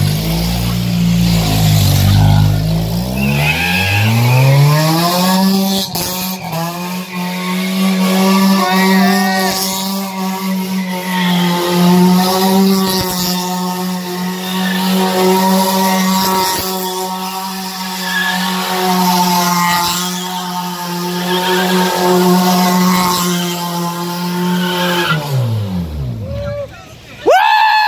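A 1990s Honda Accord sedan's engine revving up over the first few seconds and then held at high revs in one steady, unwavering note for about twenty seconds while the car spins its wheels in circles on wet pavement, the revs dropping off near the end.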